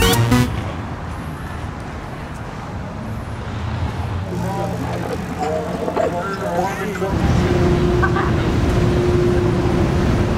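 Outdoor city ambience: a steady low rumble of vehicles with faint voices. About seven seconds in the rumble grows louder and a steady low hum joins it.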